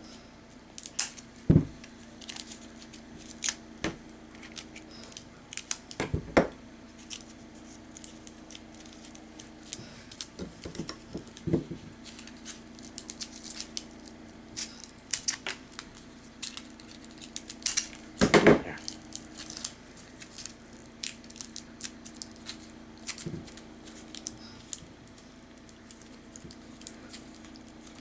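Aluminium foil being crinkled and pressed by hand around a wire armature: irregular small crackles and rustles, with a few louder knocks about a second and a half in, at about six seconds, and near the middle.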